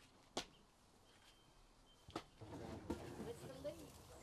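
Two sharp knocks about two seconds apart, the first the louder, followed by faint voices murmuring in the background.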